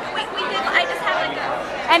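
Speech only: several voices talking over one another amid crowd chatter, with no distinct sound besides the voices.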